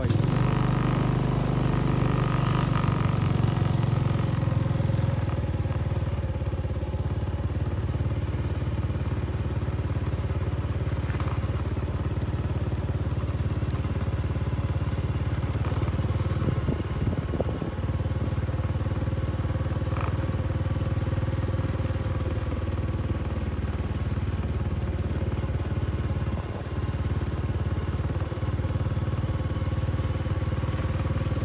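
Two-wheel hand tractor (Cambodian 'iron cow') with a single-cylinder diesel engine, running steadily under way. It is a little louder for the first few seconds, then settles to an even drone.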